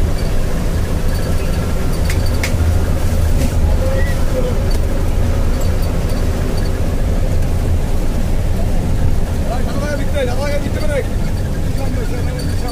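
Steady low rumble of engine and road noise heard from inside a vehicle driving on a highway. A couple of sharp clicks come about two seconds in, and voices talk briefly near the end.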